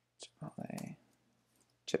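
Computer keyboard keystrokes: a few separate sharp key clicks while a word is typed, one shortly after the start and one near the end.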